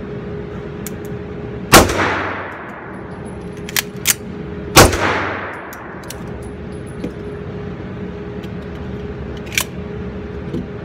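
Two 9mm 1911 pistol shots about three seconds apart, each ringing out in the reverberant indoor range, with lighter sharp clicks between them and once near the end, over a steady ventilation hum.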